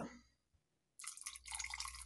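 Vino seco (dry cooking wine) poured in a thin stream into a pot of broth, rice and meat, splashing faintly into the liquid. The pouring starts about halfway in.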